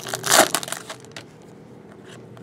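Foil trading-card pack wrapper crinkling as it is opened and the cards are pulled out. The crinkling is loudest about half a second in and dies away within the first second.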